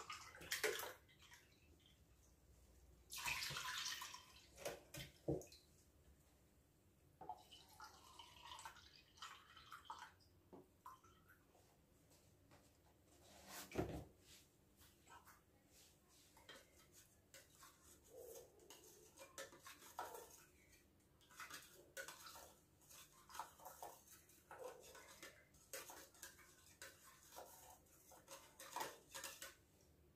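Milk being poured from a carton into a tin and tipped into a steel pot: faint, intermittent pouring and trickling of liquid, with a single sharp knock about halfway through.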